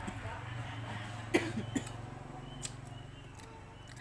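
A man eating rice from a porcelain bowl with chopsticks: light clicks of the chopsticks against the bowl, with one sharp, louder sound about a third of the way in. A steady low hum runs underneath.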